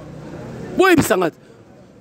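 A motor vehicle passing in the street, its noise swelling over the first second, with a short single spoken word from a man about a second in.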